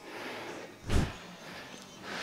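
A single heavy thud about a second in, from gym weights being set down at the end of a set.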